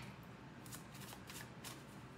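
Tarot deck being shuffled by hand: a soft, irregular run of light card flicks and slides. It begins with the fading end of a sharp tap.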